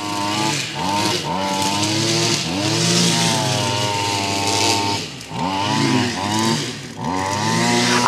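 A motor engine running and revving up and down repeatedly over a steady lower drone.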